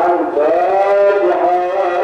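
A melodic chant sung in long held notes that slide slowly from one pitch to the next, with no breaks for words.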